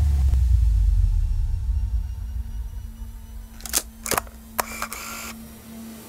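A low rumble fades out over the first two seconds and leaves a faint steady hum. Between about three and a half and five seconds in come three or four sharp, shutter-like clicks.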